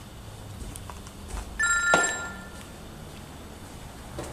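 A brief electronic ring of two steady high tones, about half a second long, about one and a half seconds in, ending with a sharp knock.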